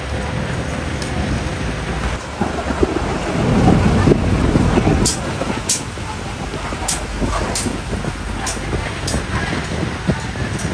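Pork ribs sizzling on a wire grill over charcoal, with a low rumble that swells a few seconds in. In the second half, metal tongs click against the grate about six times as the meat is turned.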